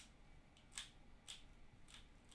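Faint plastic clicks of a 3x3 speedcube's layers being turned by hand: three short clicks about half a second apart.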